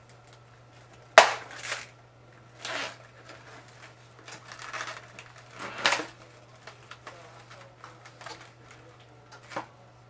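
Raw turkey wings being unwrapped from their store packaging by hand: a sharp knock about a second in, then crinkling rustles of plastic wrap and the foam tray in several short bursts.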